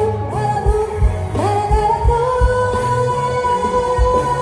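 Live amplified music: a singer holding long notes, sliding up into them, over a steady drum beat.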